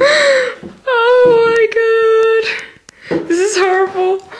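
A girl's high, drawn-out wordless wail, held on one pitch for over a second, then more voice sounds near the end, with a few short sharp clicks in the middle.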